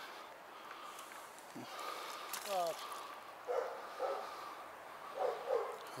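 Faint animal calls: one with a falling pitch, then a few short calls in the second half.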